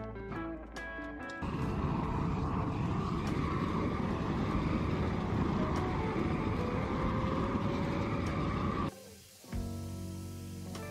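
Steady roar of a propane weed burner starting about a second and a half in and cutting off near the end, used to burn the paint off a steel barrel stove. Background music plays before and after it.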